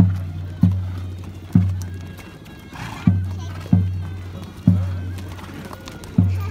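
Deep bass drum struck in a repeating group of three strokes, each low note ringing on and fading slowly, the group coming round about every three seconds.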